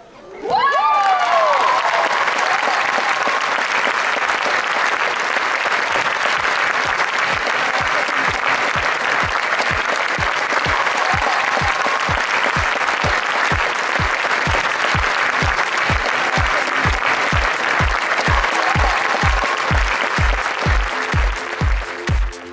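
Audience applauding and cheering in a sports hall after a men's high bar routine, starting sharply just after the gymnast comes off the bar, with a cheer at the start. A steady bass beat of music fades in under the applause and grows louder toward the end.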